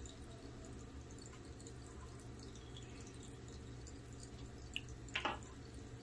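Faint, steady low room hum with light ticks and scratches from a felt-tip marking pen writing letters on paper labels. A few slightly louder clicks come about five seconds in.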